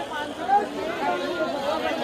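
Crowd chatter in a busy street: many voices talking over one another with no pause.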